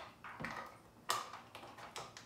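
A few light plastic clicks and taps as a plug is pushed into the AC outlet of a portable power station, the loudest about a second in.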